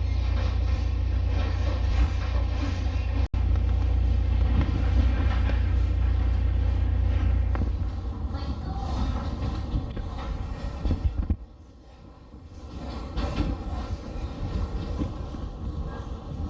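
Passenger train running, heard from inside the carriage: a steady deep rumble with wheel and track noise. The noise thins about halfway through, drops away briefly, then builds back up near the end.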